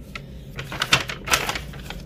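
A brown paper bag and plastic food wrapping rustling and crinkling as a hand rummages among paper plates and a wrapped croissant: a quick run of crisp crackles, loudest in the middle.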